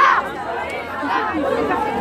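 A crowd of protesters, many voices chattering and calling out at once, a little quieter than the chanting on either side.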